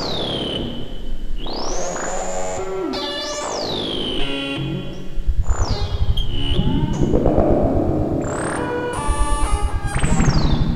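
Live electronic music from hardware synthesizers: gurgling, resonant filter sweeps that repeatedly fall and rise in pitch over stacked tones. A pulsing low bass comes in strongly about five seconds in.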